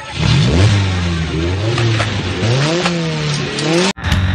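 Sports car engine starting up and revving: the pitch climbs about half a second in, settles, then rises and falls in two more rev blips. It cuts off suddenly just before the end.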